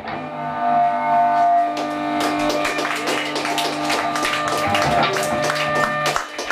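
Electric guitars and bass guitar letting chords ring, over a steady low bass note, with no drum beat. Scattered light taps come in from about two seconds in.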